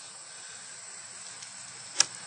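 Faint, steady outdoor background hiss with no distinct event, then a single short click at the very end.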